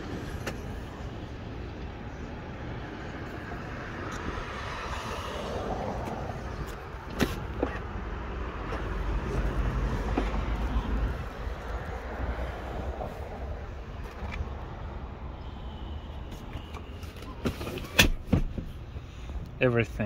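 A Tesla's doors and rear seat being handled: a few sharp clicks and knocks, the loudest near the end, over a steady background of outdoor noise.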